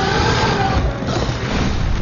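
Large dragon roaring: a loud, rasping cry that bends in pitch, followed by a second cry about a second in, over a heavy low rumble.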